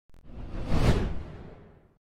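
A whoosh sound effect for a logo reveal: a rushing sweep that swells to its loudest a little under a second in, then fades away.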